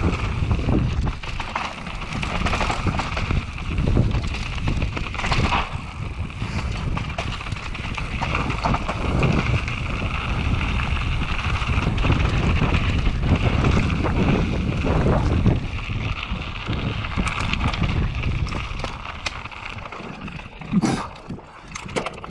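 Wind buffeting the microphone: a continuous low rumble that rises and falls.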